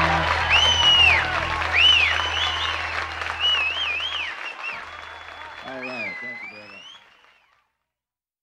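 Audience applauding and whistling at the end of a live song, while the band's last low note rings out under it; a voice speaks briefly near the end, and it all fades out.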